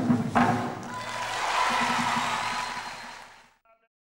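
Ka hand drum struck in quick strokes, the solo ending about half a second in. A swelling wash of applause follows and fades out before the end.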